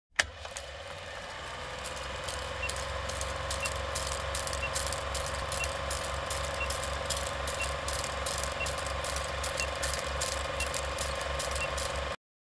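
Old film projector sound with a steady rapid clatter, hum and crackle, and a short high beep every second as a film-leader countdown ticks down to zero. It starts with a click and cuts off suddenly at the end.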